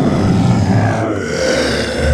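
Werewolf sound effect: a deep, rough monster growl that goes on throughout.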